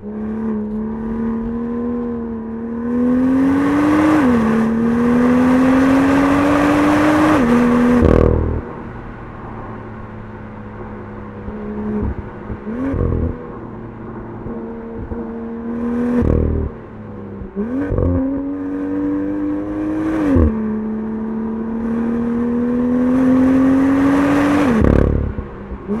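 BMW M2's turbocharged 3.0-litre straight-six pulling through the gears under throttle. The engine note climbs steadily and drops sharply at each upshift, with sharp snaps at several of the shifts.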